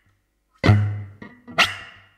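Electric bass played in sharp percussive attacks, each ringing out briefly: a strong hit about half a second in with a low note held under it, a lighter one a little after a second, and another strong hit near the end.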